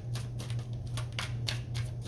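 Tarot cards being shuffled by hand: a quick, uneven run of soft snaps and clicks, over a steady low hum.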